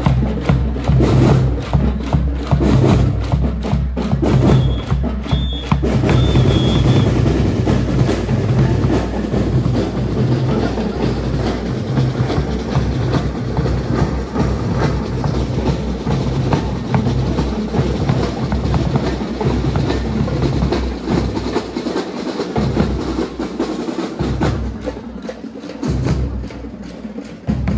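Drum and lyre corps playing a percussion-led piece: snare and bass drums beating a steady rhythm, the bass drums heaviest in the first ten seconds or so.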